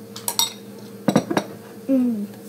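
Metal spoon clinking against a ceramic cereal bowl: two quick ringing clinks early, then a short cluster of louder knocks a little past a second in.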